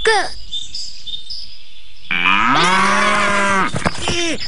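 A cow's single long moo, starting about two seconds in and lasting about a second and a half.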